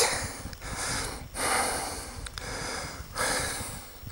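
A person breathing close to the microphone: about three long breaths, each lasting about a second.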